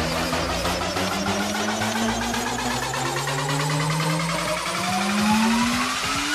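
Psytrance breakdown: a rising, engine-like synth sweep climbs steadily in pitch over a busy pulsing texture, building toward the drop.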